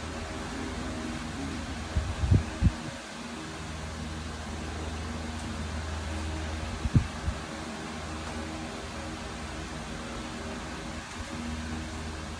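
A steady low mechanical hum, with a few brief dull bumps about two seconds in and again around seven seconds.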